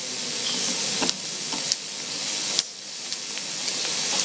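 A steady, fairly loud hiss of noise, strongest in the high pitches, broken by short dips about a second in and about two and a half seconds in.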